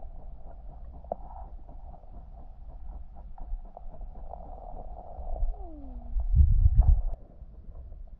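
Muffled underwater sound picked up by a submerged camera: a low rumble of moving water with faint scattered clicks, a short falling tone a little past five seconds, and a louder low gurgling burst about six seconds in.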